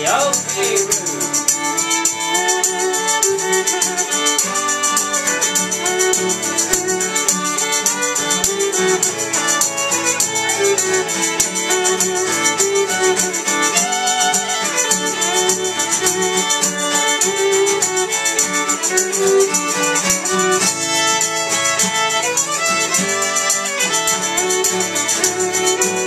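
Instrumental break in a traditional folk song: a fiddle leads over a strummed acoustic guitar, with a hand-held shaker keeping a steady fast rhythm.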